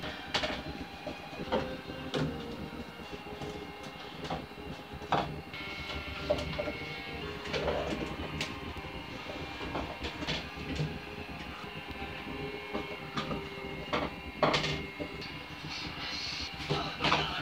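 Wooden pencils being set down one by one on a wooden tabletop: irregular light clicks and knocks over a steady background hum.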